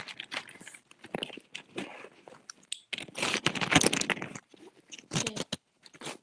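Medicine packets and other bag contents handled close to the microphone: irregular crinkling, scraping and small knocks, with the busiest stretch a little past halfway.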